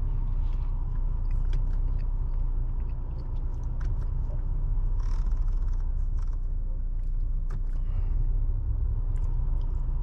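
Steady low rumble inside a parked car's cabin, from the engine idling and the climate fan blowing, with a few light clicks from the climate-control buttons and knob.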